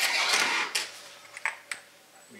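The tight front end cap of a large Sanyo stepper motor being worked off its housing by hand: a scraping rasp for about half a second, then a few sharp metallic clicks as it comes free.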